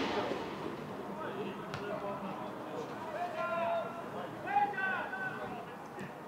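Footballers shouting to one another across an open pitch in a few short calls, with two sharp knocks of the ball being kicked, one at the start and one under two seconds in.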